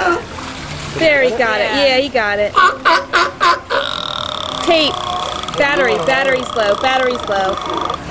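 Several sea lions barking and honking over one another, the calls short and harsh and bending in pitch, with splashing water among them.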